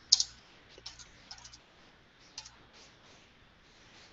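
Computer keyboard keys clicking in a few scattered, faint keystrokes. The sharpest one comes right at the start.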